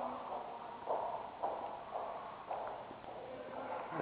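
Footsteps on a hard tiled floor, soft and even at about two steps a second.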